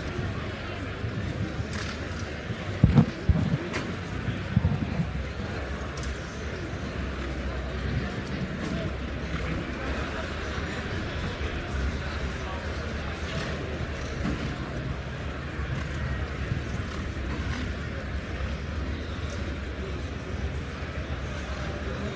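Outdoor show-jumping arena ambience: a steady murmur of spectators, with a couple of loud thuds about three seconds in.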